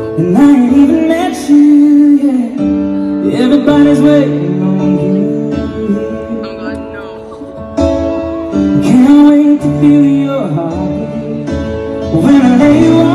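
Live ballad in an arena: a man singing in long phrases over held piano chords and strummed acoustic guitar.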